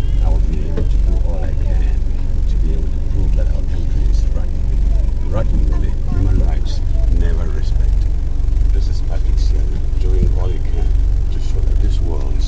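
A bus engine idling with a low, regular throb, under the murmur of other people's voices.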